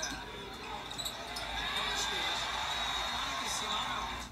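Sound of a televised basketball game: a ball dribbled on the hardwood court over arena crowd noise and faint commentary, the arena noise swelling about a second and a half in.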